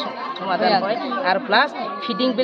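Speech only: women's voices talking, several at once.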